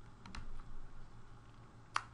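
Faint computer clicks over a low steady hum: two light clicks about a third of a second in, then one sharper, louder click near the end as the slide advances.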